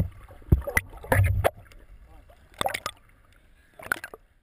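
Water sloshing and splashing around a camera held at the sea surface, in irregular bursts with low thumps.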